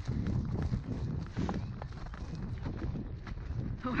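A pony's hoofbeats on soft, wet grass, with wind rumbling on the helmet microphone.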